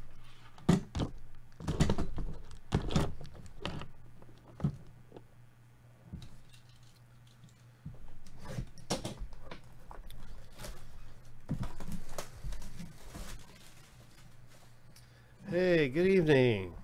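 A shrink-wrapped cardboard trading-card hobby box being handled: several sharp knocks and taps in the first few seconds, then plastic wrap being slit and pulled off with scratchy crinkling from about eight seconds in.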